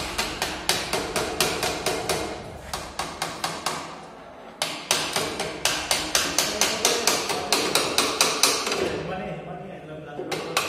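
A hammer tapping quickly and repeatedly on metal parts of a dismantled single-phase induction motor, about four blows a second. The blows come in runs: one over the first two seconds, a short burst, a pause around the middle, then a longer run of taps that stops near the end.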